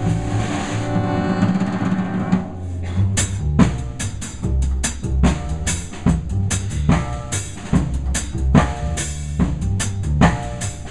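Live jazz band: saxophone, trumpet and trombone play a held ensemble phrase over cymbal wash, then about three seconds in the horns drop out and the drum kit takes over with sharp, rhythmic snare and bass-drum strikes over upright bass.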